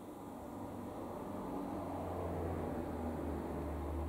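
Steady background noise: an even hiss over a low hum, swelling slightly in the middle, with no distinct events.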